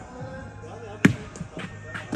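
A ball striking hard once about a second in, followed by a few lighter bounces, each echoing in a large hall with a hard floor.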